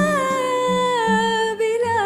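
A woman singing a long held note that slowly sinks in pitch, over a low instrumental accompaniment.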